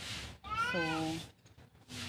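A cat meowing once, rising and then falling in pitch, about half a second in, over a woman's short spoken word.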